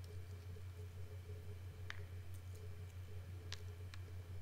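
A few faint, sharp clicks as coarse sea salt crystals are dropped one by one onto wet watercolour paper, over a low steady hum.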